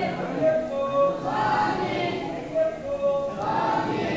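A group of voices chanting in unison: a short sung devotional phrase of held notes, repeating about every two seconds.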